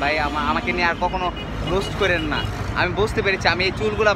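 A man talking in Bengali, with a steady low rumble of street traffic underneath.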